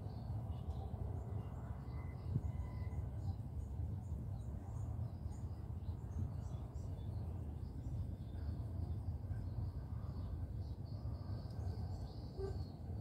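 Outdoor ambience: a steady low rumble with faint, scattered high chirps of small birds.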